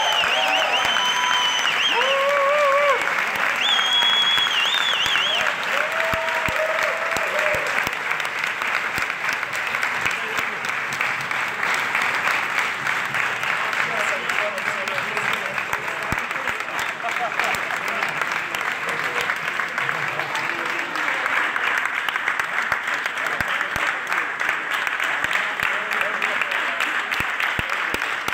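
Audience applauding steadily, with cheers and whistles over it in the first six seconds or so.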